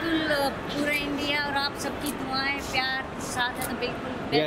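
Indistinct speech: people talking, with no clear words.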